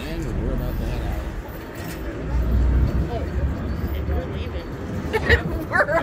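Deep low rumble of the ferry's engines, loudest from about two seconds in, under the murmur of people talking; a voice comes in near the end.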